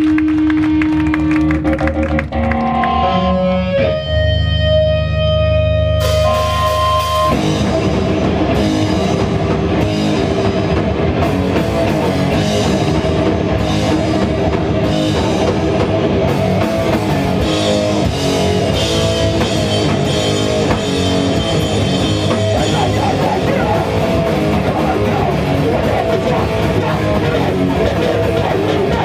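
Hardcore punk band playing live through amplifiers, loud and distorted. The song opens with held, ringing guitar notes over a low rumble, then the drums and the full band come in about seven seconds in and drive on.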